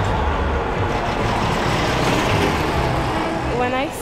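Street traffic: a steady rush with a low rumble as a vehicle goes by, with no speech over it until a voice starts near the end.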